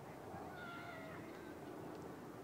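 A single faint animal cry, pitched with several overtones and slightly falling, lasting under a second about half a second in, over a steady low background noise.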